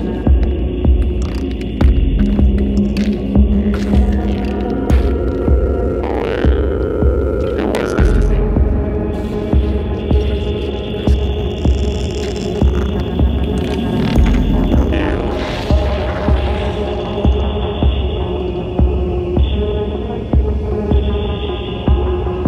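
Experimental industrial electronic music: sustained synthesizer drones at several pitches over a repeating deep bass pulse.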